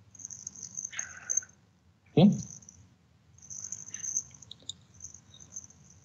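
A faint, thin high-pitched hiss that comes and goes over a low hum on a video-call audio line, with one short spoken "Okay" about two seconds in.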